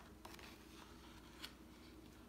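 Near silence, with two faint soft clicks and a light paper rustle as the stiff page of a large hardback picture book is turned.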